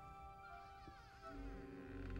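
Quiet, tense film score of held notes, with a faint wavering high sound in the middle, a soft click about a second in, and low bass building near the end.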